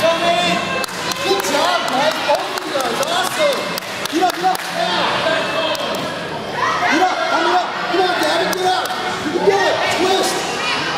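Overlapping voices of spectators and coaches calling out and chattering, with occasional sharp thuds.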